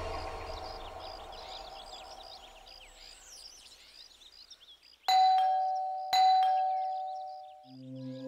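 Doorbell chime rung twice, about a second apart; each press is a sudden ding-dong that rings on and dies away.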